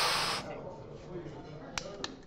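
A short breathy hiss that dies away about half a second in, then quiet room tone with a single sharp click near the end.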